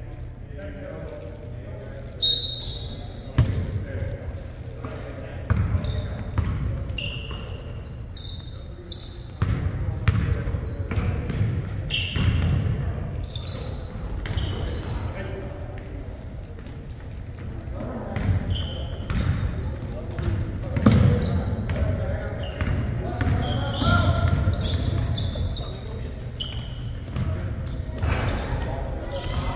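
Pickup-style basketball game in a large echoing gym: the ball bouncing on the hardwood floor, short high sneaker squeaks, and players' voices calling out over the hall's low steady hum.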